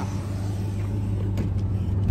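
LS V8 engine in a BMW E30 drift car idling with a steady low hum. It is running hot: the coolant temperature will not come down.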